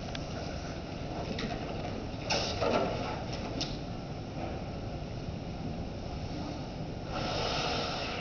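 Low room noise with a short rush of air about two seconds in: helium being drawn from a rubber balloon's neck by mouth. A few light clicks and a second broad rush come near the end.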